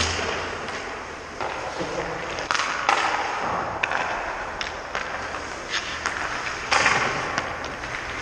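Ice hockey sticks striking pucks and pucks hitting the goalie and the boards: several sharp cracks at irregular gaps, echoing through the arena, with skate blades scraping the ice in between.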